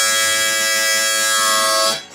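Harmonica playing one long held chord, loud and steady, cut off sharply near the end.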